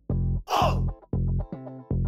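Background music made of short, bass-heavy chopped notes repeating about two or three times a second. About half a second in, a brief breathy, sigh-like noise cuts through.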